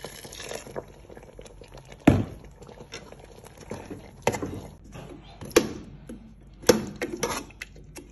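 A metal spoon stirring thick soup in a metal cooking pot, knocking sharply against the pot about five times at uneven intervals.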